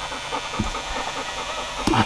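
Corded electric beard clippers buzzing steadily while trimming a full beard.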